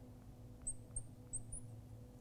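Marker squeaking on a glass lightboard as symbols are written: four short, high squeaks in the second half, over a steady low electrical hum.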